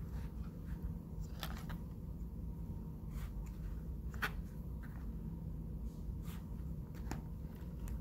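Faint clicks and light scrapes from a needle tool cutting a small piece of clay and from hands handling the clay and tool on a cloth-covered table, about a dozen soft ticks with the sharpest about four seconds in, over a steady low hum.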